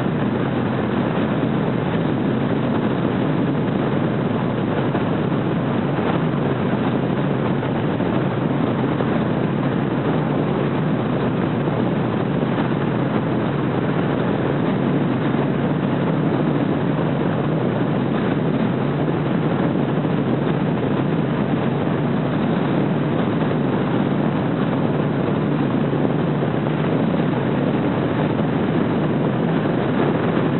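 Car driving at a steady speed: an even, unbroken rush of engine, tyre and wind noise.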